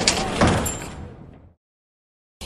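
Sound effect for an animated channel-logo intro: a noisy rush of sound with a thud about half a second in, fading out by about a second and a half.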